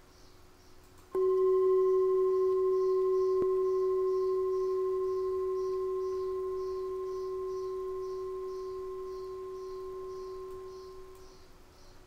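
A singing bowl struck once about a second in, ringing one low steady note with fainter higher overtones and fading slowly over about ten seconds.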